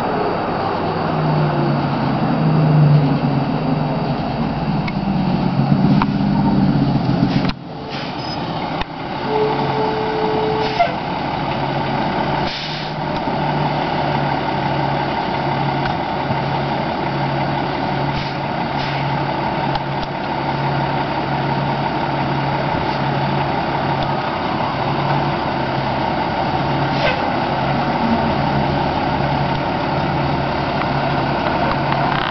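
Fire engine's diesel engine running beside a burning car, a low hum that pulses evenly about once a second over the steady rush of the flames, with a short hiss about twelve seconds in.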